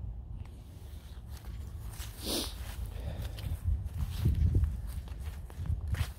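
Soft footfalls on grassy ground over a low rumble, with a short breathy rustle about two seconds in.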